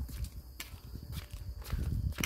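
Small wheels rolling over a concrete sidewalk: a low rumble with irregular clicks and knocks, from a pushed stroller and a child's kick scooter.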